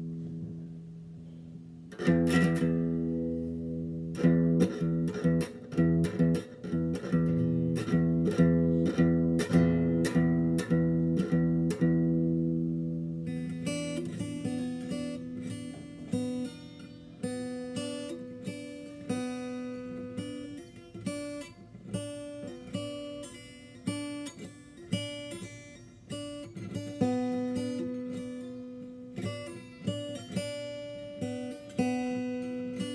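Guitar strings played by hand. A chord rings and fades, a strong strum comes about two seconds in, and repeated strums follow at about two a second. From a little before halfway it turns to quicker picking of separate, higher notes.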